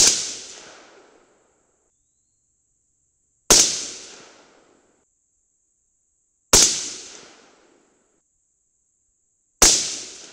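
A 22 Nosler AR-15 rifle firing shots about three seconds apart, one right at the start and three more after it. Each crack echoes and fades over about a second.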